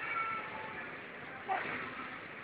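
A small child's short, high-pitched vocal sounds: one at the start and another about a second and a half in, over steady background noise.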